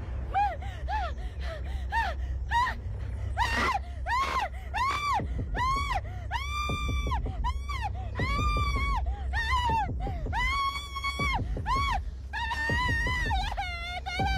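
A woman screaming and wailing in distress: a quick run of short, high, gasping cries that lengthen into long held wails about halfway through, with a low steady rumble underneath.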